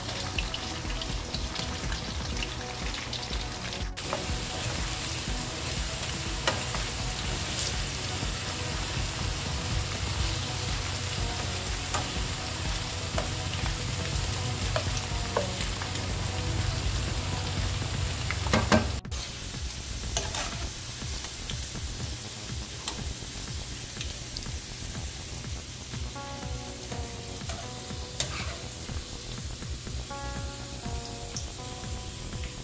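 Sliced potatoes deep-frying in hot oil in a frying pan, sizzling and bubbling steadily while a wooden spatula stirs and separates them. About two-thirds of the way in there is a sudden break, after which the sizzle is quieter.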